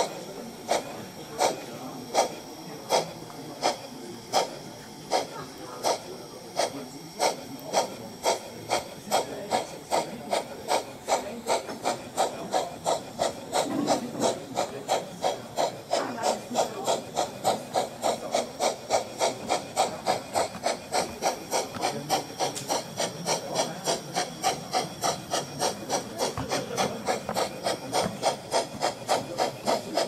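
Steam exhaust chuffs from the onboard sound module and loudspeaker of a 1:32 Gauge 1 brass model of a Prussian T 9.3 (class 91.3-18) tank locomotive under way, a rasping beat that quickens steadily from about one and a half to about three chuffs a second as the engine picks up speed.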